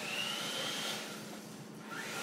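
Small electric motor of a radio-controlled toy car whining, the pitch rising as the car speeds up over about the first second, then dropping away.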